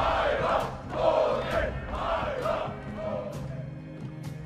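A crowd of men chanting a battle cry in unison: four shouts about a second apart that fade toward the end, over low dramatic music.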